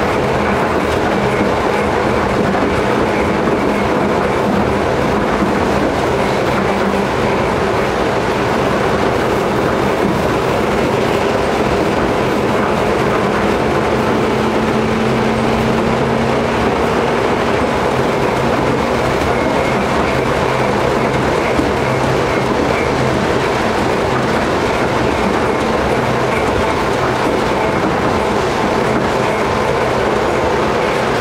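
Tram running along street track, heard from inside the front cab: steady rolling noise of wheels on rail with a low, steady motor hum.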